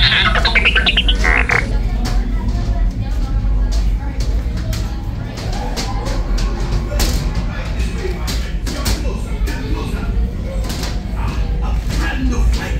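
A short comic laughing sound effect at the start, then a steady low hum of the Millennium Falcon's ship-interior ambience, with indistinct voices and scattered clicks from guests walking through the corridor.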